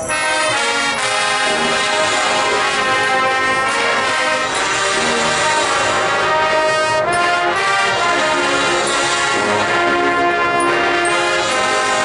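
High school marching band's brass section playing loud held chords that change every two to three seconds.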